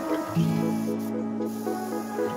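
Soft background music: sustained chords over a repeating plucked figure, with a new chord coming in shortly after the start.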